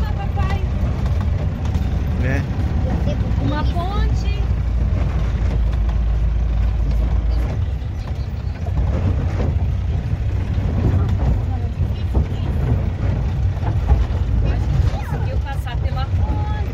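Cabin noise of an Agrale-based motorhome on the move: a steady low engine drone with tyre rumble on a gravel road. The sound changes about halfway through as it rolls onto a plank-decked bridge.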